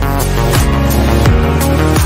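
Background music: an electronic track with sustained chords and a deep kick drum beating about every 0.7 seconds.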